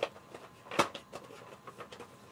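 A few light clicks and taps of small plastic action-figure parts being handled, the sharpest just under a second in.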